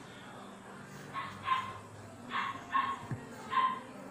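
A dog barking: five short barks, mostly in pairs, starting about a second in. A soft knock comes just after the third second.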